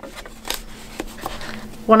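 Paper pages rustling, with a few light clicks and taps, as a hardcover book is handled and laid against a slotted wooden book-folding marker.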